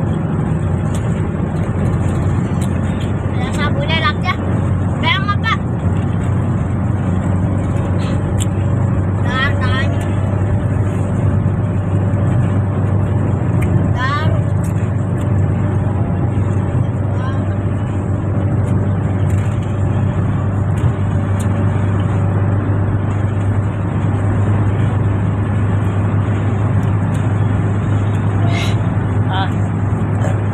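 Steady engine and road drone heard inside the cabin of a moving passenger van, with a constant low hum. A few short snatches of voices come through over it.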